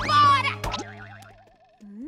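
Cartoon soundtrack: a short shout at the start, then a music sting that fades away, with a wobbling, boing-like comic sound effect about a second in. A brief rising tone comes near the end.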